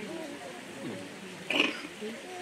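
Indistinct murmur of several voices with no music playing, and one brief louder vocal sound, a short exclamation or laugh, about three-quarters of the way in.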